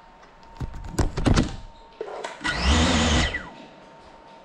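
Small FPV drone crashing: a quick run of knocks and clatter as it hits, then a loud burst of motor and propeller buzz lasting under a second that winds down with a falling pitch.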